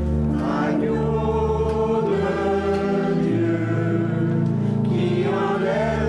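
Small mixed church choir singing a slow hymn in held notes, over sustained low pipe-organ notes that change every second or two.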